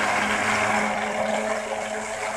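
Portable rechargeable blender running, its small battery motor humming steadily as it churns a thick banana, oatmeal and peanut butter smoothie.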